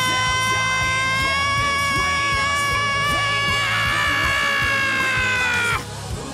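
Playback of a song mix in which a recorded lead vocal holds one long, steady high note for nearly six seconds over a backing track with a beat. The note breaks off just before the end, and the backing plays on briefly.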